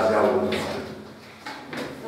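A man's voice in the first moment, then chalk scratching and tapping on a blackboard as a short mark is written.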